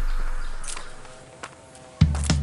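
Motorcycle riding noise, a low rumble and hiss, fading away over about a second and a half to a quiet background with a few faint clicks.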